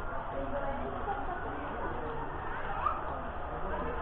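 Indistinct background chatter of several people talking at once, with no clear words standing out.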